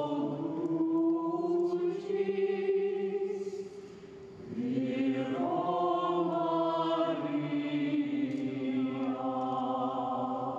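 Choir singing Gregorian chant in long, held notes, with a short break about four seconds in before the next phrase begins.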